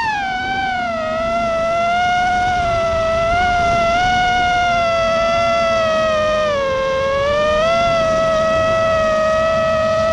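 FPV quadcopter's brushless motors and propellers whining, picked up by the onboard camera, holding a fairly steady pitch that dips briefly about seven seconds in and then climbs back.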